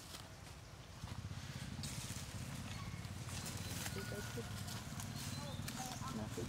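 Outdoor background: a low steady rumble that grows louder about a second in, with faint short calls or distant voices in the second half.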